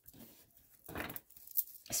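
A deck of tarot cards being picked up and handled, with a brief faint rustle of cards about a second in and another just before the end.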